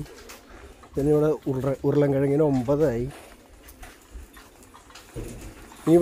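A man's voice speaking for about two seconds, starting about a second in. It then gives way to quieter open-air market background until speech resumes near the end.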